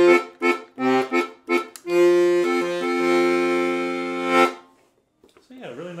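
Excelsior Accordiana piano accordion played on its left-hand bass side with the tenor bass register: a few short bass notes and chords, then one chord held for about two and a half seconds that stops about four and a half seconds in.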